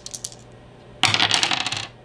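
Small plastic game-coin tokens clicking and clattering on a wooden tabletop: a few light clicks, then about a second in a dense rattle of many coins for just under a second.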